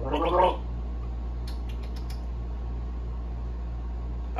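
A man gargles briefly with a mouthful of drink at the very start, then only a steady low hum remains.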